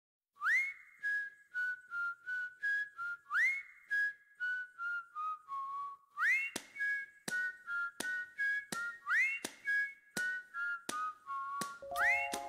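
Background music: a whistled tune over a steady beat of sharp clicks. Each phrase opens with a rising swoop and steps down through a few notes, repeating about every three seconds, and other instruments join right at the end.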